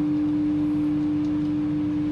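A steady one-pitch hum with a low rumble under it, from a running kitchen appliance.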